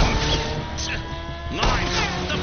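Sport motorcycle engine running at speed, its note rising slowly over the first second and a half, mixed into a film soundtrack. A voice cuts in near the end.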